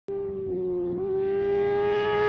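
A car engine held at high revs, one steady note that slowly climbs in pitch and grows louder.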